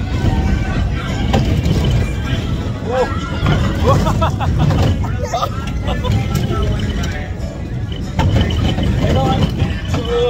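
Heavy low rumble of a moving whip-style spinning ride on the phone microphone, with ride music playing and riders laughing over it.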